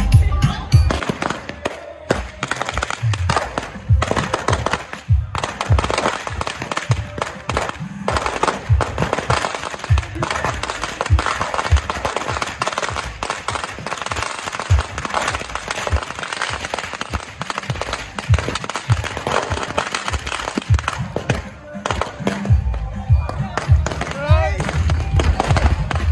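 Firecrackers going off on the street: a long run of rapid, sharp pops and crackles. Dance music with heavy bass is heard at the very start and comes back near the end.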